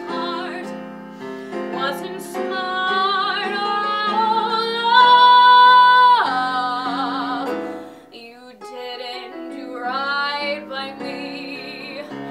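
A woman singing solo with piano accompaniment. She holds a long high note, the loudest moment, from about five seconds in. Just after six seconds it slides down into wavering vibrato notes, there is a brief lull near eight seconds, and then the singing resumes.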